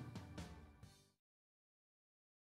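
The tail of a band's song fading out, with the music dying away and ending about a second in, followed by silence.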